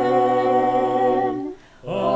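A single unaccompanied voice singing a long, held note of a sung 'Amen', stepping down in pitch at the start, with a brief break for breath about a second and a half in before the next note begins.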